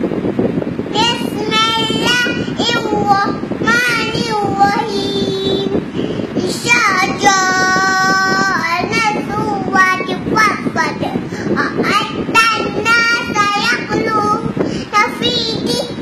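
A young girl's voice chanting Quran recitation in a melodic tune, phrase after phrase, with a long held note around the middle.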